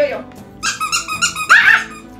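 Small dogs squabbling: a high-pitched squealing whine about half a second in, then a louder, sharper yelp near the end.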